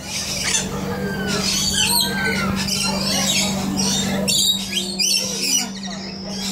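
Rainbow lorikeets calling in many short, shrill screeches and chatters, with a steady low hum underneath.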